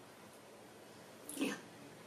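A brief, faint voice-like fragment from a Spiritus ghost-box app played through a speaker, taken as the answer "yeah" to a question, about a second and a half in, over a low steady hiss.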